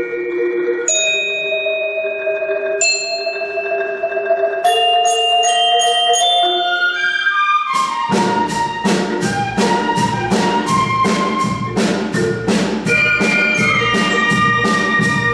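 Mallet percussion (marimba and glockenspiel) holding ringing chords. About eight seconds in, the full band joins with a steady beat of drum strokes, about three a second, under many pitched notes.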